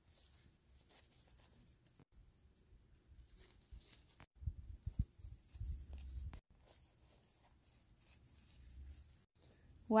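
Faint crackling and scraping of dry leaves and gravel as plastic toy wolf figurines are walked over the ground, with a low rumble in the middle.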